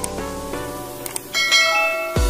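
Musical transition sting made of bell-like chiming tones that ring on and overlap, with a new, brighter set of chimes striking about one and a half seconds in.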